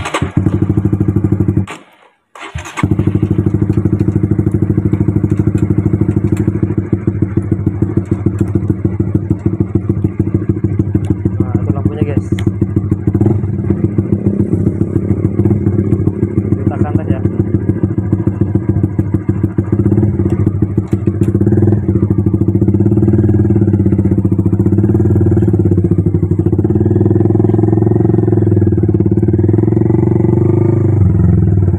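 Honda Supra GTR 150's single-cylinder engine running as the motorcycle rides along the road, heard close up from the handlebars. The sound cuts out briefly about two seconds in, then runs on steadily.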